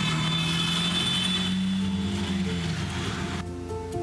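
Auto-rickshaw engine running with street traffic noise, heard from inside the cab. Soft background music comes in about two seconds in, and the engine and street noise stop shortly before the end, leaving the music.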